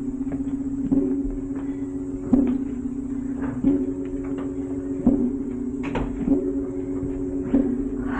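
A clock ticking slowly and evenly, about once every second and a quarter, over a steady low droning chord.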